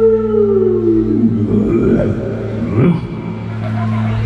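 Live band music in a slow, sustained passage: a held amplified note glides down in pitch, then wavering sliding tones rise and fall over a steady low drone.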